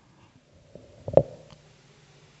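A pause between recited phrases, with a brief mouth and throat noise from the preacher close on the microphone a little past a second in, followed by a fainter click.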